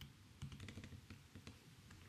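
Faint keystrokes on a computer keyboard, a short run of light clicks.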